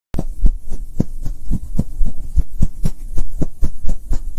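Logo intro sound effect: a quick series of deep thumps, about three or four a second, over a steady low hum.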